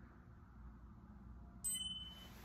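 Quiet room tone, then about one and a half seconds in a short electronic chime from the tablet's velocity-tracking app as its countdown ends, the cue to start the set.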